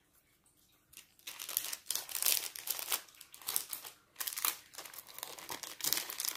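Clear plastic bag crinkling in irregular bursts as a stack of stickers is handled inside it, starting about a second in.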